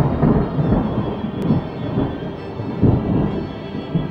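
Soundtrack music with a rolling thunder rumble under held orchestral notes, swelling again about two and three seconds in.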